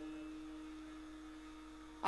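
A faint steady tone at a single pitch, slowly fading, over a low hum.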